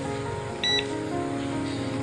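A digital coffee scale gives one short, high beep about half a second in as its tare button is pressed, zeroing it. Background music plays throughout.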